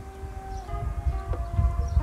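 A steady held tone with overtones, dropping slightly in pitch about two-thirds of a second in, over a low rumble.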